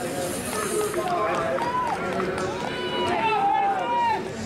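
Voices talking, not clear enough for words to be made out, over a steady outdoor background hiss.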